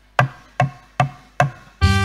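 Four evenly spaced percussion strikes, about two and a half a second, counting into the live ensemble. The full band comes in near the end with sustained melodic notes.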